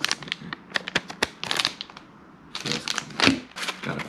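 Crinkling and crackling of plastic fishing-lure packaging being handled: a soft-plastic bait bag and a clear plastic clamshell pack. It comes as a string of short rustling bursts with a few sharp clicks, the loudest burst a little before the end.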